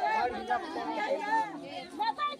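Several people talking at once, overlapping voices of a crowd gathered close together.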